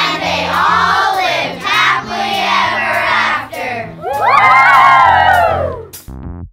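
A class of children shouting together in unison, then one long cheer from about four seconds in, over background music.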